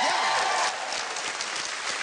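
Studio audience applauding, a dense even clatter of many hands that eases slightly after the first half-second.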